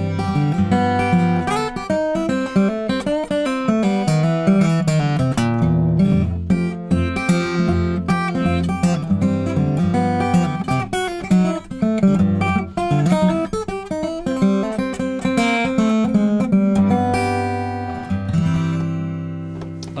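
Klapproth fanned-fret acoustic guitar of maple and spruce, played fingerstyle: a flowing melodic piece over moving bass notes. It ends on a chord left ringing and fading out near the end.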